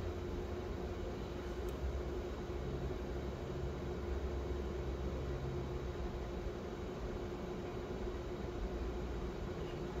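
Steady background hum and hiss, like a fan or air conditioning running, with one constant mid-low tone and a low rumble throughout.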